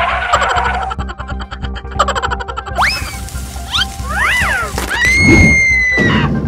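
Cartoon background music with added sound effects: a few sharp clicks early, then quick pitch glides that rise and fall in the middle, and a held high whistle-like tone near the end.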